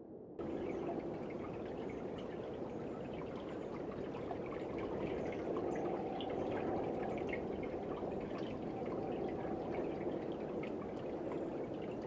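Water lapping and trickling at a lake's rocky edge: a steady wash with faint scattered drips, starting just after the beginning.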